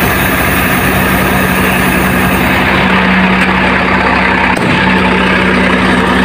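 Heavy truck's diesel engine idling steadily with a low, even hum, run after a start to build up air pressure in the air-brake system.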